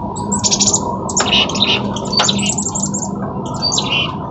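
Small songbirds chirping in quick, repeated bursts, agitated at their own reflection in a window pane. Two sharp clicks about a second apart come through among the chirps.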